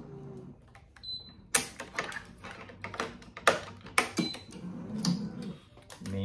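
A tennis racquet being strung on a stringing machine: a main string is drawn through the frame and the mounted racquet and machine are handled, giving a series of sharp clicks and knocks with faint scraping between them.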